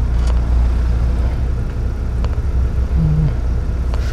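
Steady low engine rumble heard inside the cab of a manual-transmission truck creeping forward in slow traffic.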